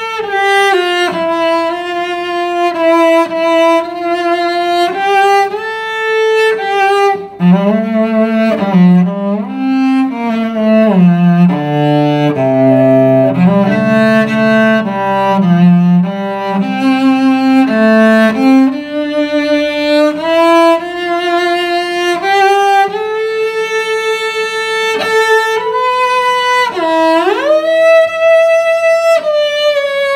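Cello played with the bow, a slow single-line melody of held notes. About a quarter of the way in it drops to the low strings, climbs back up by about two-thirds of the way through, and near the end one note slides upward.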